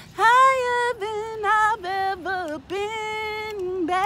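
A woman singing a cappella, holding long notes that bend and slide in pitch, in several short phrases with brief breaths between them.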